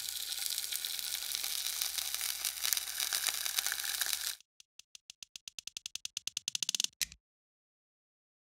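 A fried egg sizzling and crackling in a pan for about four seconds. Then a chain of dominoes toppling: a run of clicks that come faster and louder, cutting off suddenly about seven seconds in.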